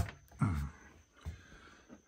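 A single sharp click of a battery's miniature circuit breaker being switched on, right at the start. About half a second later comes a brief wordless sound from a man's voice.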